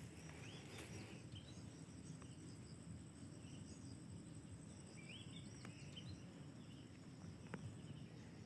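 Faint outdoor ambience: a steady high insect drone, with a few short rising bird chirps near the start and again about five seconds in.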